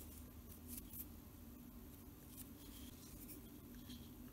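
Near silence: a faint steady room hum with a few light, scattered ticks from a toothpick and fingertips handling tiny cutout leaves and beads on a miniature centerpiece.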